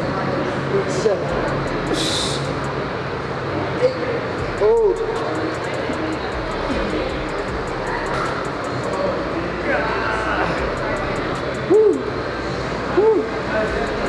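Busy gym ambience with background music, broken by a few short strained grunts from a man straining to hold dumbbells overhead in a weighted hollow hold. One grunt comes about five seconds in and two more near the end.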